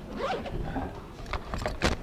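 A bag zipper pulled in quick rasping strokes, growing louder toward the end, with a brief voice near the start.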